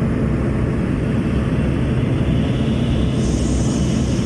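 Light aircraft's engine and propeller running steadily, a loud low drone heard from inside the cabin, with a higher rushing hiss joining near the end.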